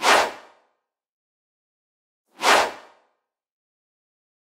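Two short whoosh sound effects, one at the start and one about two and a half seconds in, each a quick swish that fades within half a second, accompanying wipe transitions between slides.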